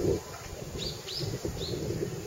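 A small bird calling: three short, high chirps, each dropping in pitch, about a third of a second apart.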